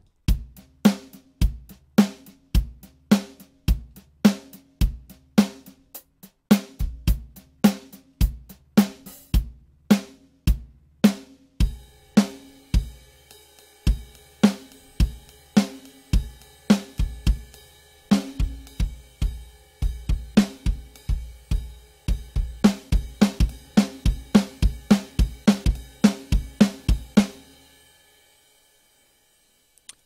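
Sampled acoustic drum kit from Toontrack's Americana EZX library playing a laid-back country-style groove, with kick, snare and hi-hat. After a short break about 11 seconds in, the groove carries on with a cymbal ringing under it, then stops near the end and the last hits ring out.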